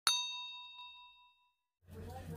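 A single bright bell 'ding', the notification-bell sound effect of a YouTube subscribe animation. It is struck once and rings out, fading over about a second and a half. Just before the end, a steady low hum and background noise cut in.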